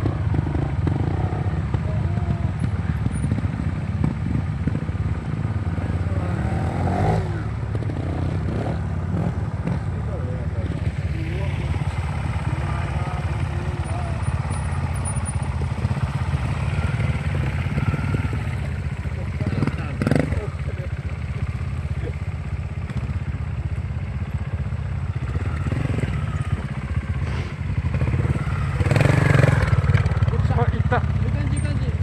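Trials motorcycle engine running at low revs with a steady low pulse, getting louder near the end.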